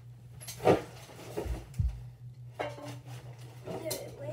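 Knocks and thumps of someone moving about a small room, the loudest a sharp knock just under a second in, followed by two dull thumps, over a steady low hum.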